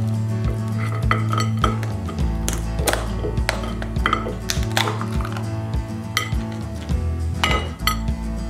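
Cooked crab's shell being pried apart by hand over a ceramic plate: a series of sharp cracks and clicks of shell, with shell knocking on the plate. Background music with a steady beat plays underneath.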